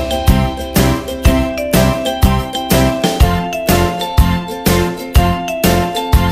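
Background children's music: a bright, bell-like tinkling melody over a steady beat of about two beats a second.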